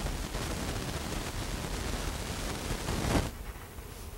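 Chalk scratching across a paper easel pad in drawing strokes, a dry, even hiss that swells briefly and stops a little after three seconds in.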